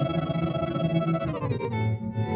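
Guitar played through the SoundSketch pedal's granular delay: a wash of sustained, layered tones whose pitch slides down about three-quarters of the way through, then settles on a new set of notes.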